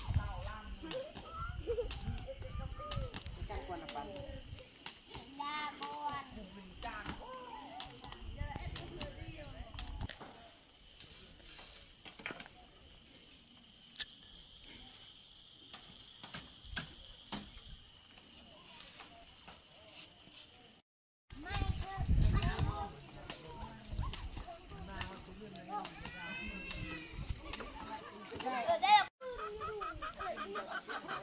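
Children's voices, calling and playing, for the first part. Then a quieter stretch with scattered clicks and knocks. After an abrupt break, more voices and high calls.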